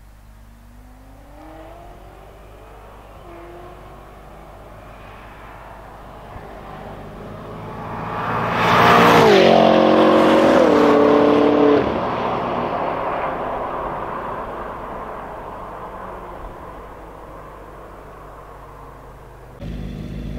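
Tuned BMW M5 F10's twin-turbo V8 with Akrapovic exhaust accelerating flat out through the gears, its note rising from far off. It gets loud about eight seconds in, with quick upshifts, drops sharply near twelve seconds, then fades into the distance. Near the end it cuts to louder engines idling.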